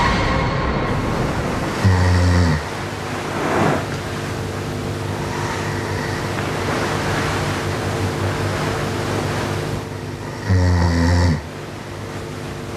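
A man snoring in his sleep: two loud, low snores about eight seconds apart, one about two seconds in and one near the end.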